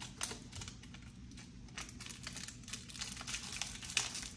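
Hands handling medical supply packaging on a countertop: a run of light, irregular clicks and crinkles.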